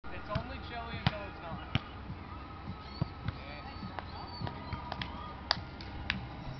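Volleyball being hit by hands in an outdoor game: several sharp slaps, the loudest about a second in and near the end, with players' voices faint in the background.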